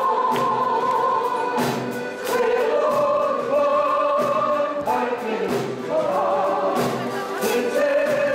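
Piano accordions playing together with several voices singing along, held notes moving in phrases that change every second or two.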